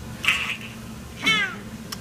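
A baby's short breathy vocal sound, then about a second in a high-pitched squeal that falls in pitch. A sharp click near the end.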